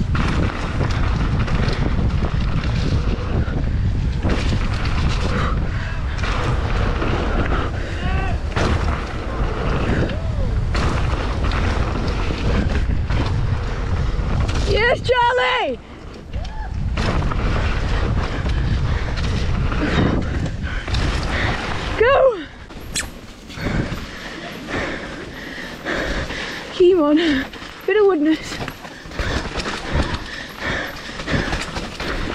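Wind rushing over the handlebar camera's microphone with the rumble of mountain bike tyres on a fast gravel and dirt trail descent. A few short shouts cut in around the middle and near the end, and the rumble turns choppier and bumpier in the last third.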